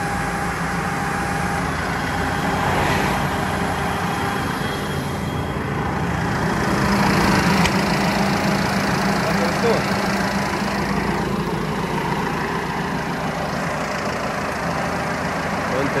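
Deutz-Fahr 6135 tractor's diesel engine idling steadily, a little louder about halfway through.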